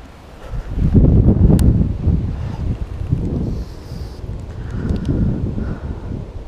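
Wind buffeting the camera's microphone: a low, gusty rumble that swells about a second in and then rises and falls unevenly.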